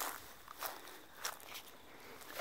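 Faint footsteps: about three soft steps, roughly two-thirds of a second apart.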